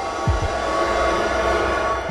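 Transition music and sound effect: held droning notes under a swelling whoosh of noise, with a deep falling boom about a third of a second in.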